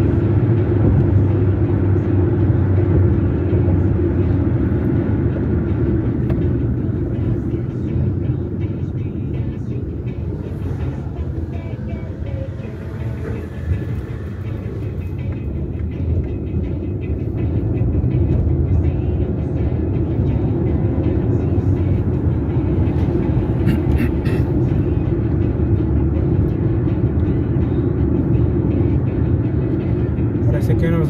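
Steady drone of a car's engine and tyres on the road, heard from inside the moving car. It eases a little around the middle and picks up again.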